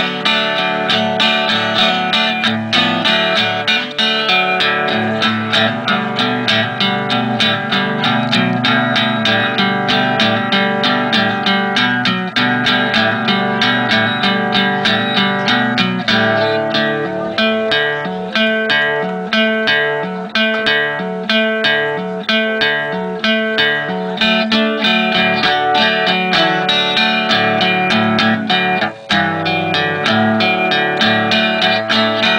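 Solo archtop guitar played as an instrumental, with fast, steady picked and strummed notes. About halfway through, a bouncing bass line comes in under the melody.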